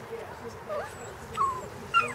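Five-week-old Golden Retriever puppies play-fighting, giving short high whines and yips, about three in quick succession, the last the loudest.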